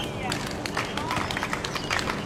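Tennis players' footsteps and short sneaker squeaks on a hard court, a scatter of light clicks, with a voice in the background.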